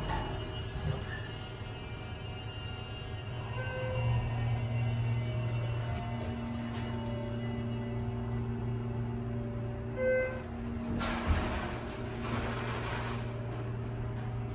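Schindler 330A hydraulic elevator's submersible pump motor humming steadily in a low B-flat as the car rises. Short electronic chime tones sound about four seconds in and again about ten seconds in, then the car's center-opening doors slide open with a rush of noise.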